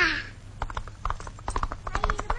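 Horses' hooves clip-clopping, a quick, uneven run of hoof strikes that starts about half a second in, as of several horses walking. A falling call tails off at the very start.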